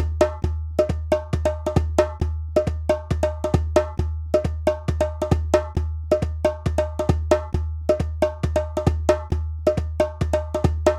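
Hand-drum music: a repeating pattern of sharp hand strikes, about three to four a second, many with a short ringing tone, over a steady low drone.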